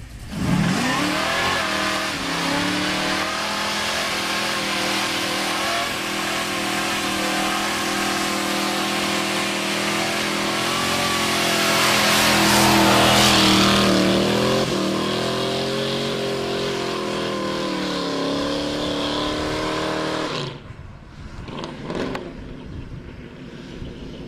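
Dodge pickup truck's engine revving up quickly, then held at high revs through a burnout, the pitch wavering as the tyres spin. There is a louder, hissier stretch of tyre noise about halfway through, and the engine drops off sharply near the end.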